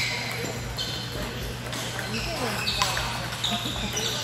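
Table tennis rally: the celluloid-type ball clicking sharply off rubber paddles and the table several times, over the steady chatter of a busy hall.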